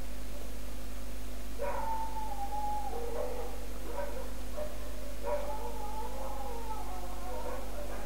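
Faint howling from an animal: two long wavering calls that fall in pitch, the first about one and a half seconds in and the second about five seconds in. Both sit over a steady electrical hum in the recording.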